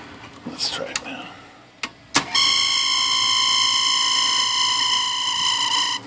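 IBM Model C typewriter's electric motor running with a loud, steady high-pitched squeal that starts suddenly about two seconds in, just after a couple of clicks. The owner blames the dry motor, which he says needs flushing out.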